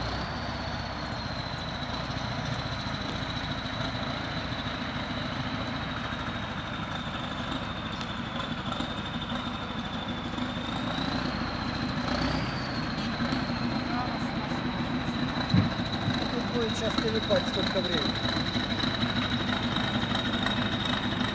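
A distant tractor-bulldozer's engine running as it approaches, a steady low rumble.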